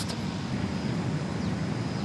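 A steady, low outdoor rumble with no strikes or clicks in it, like distant aircraft or traffic heard under the quiet of a golf green.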